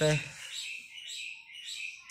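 Small birds chirping in the background: a string of short, high chirps.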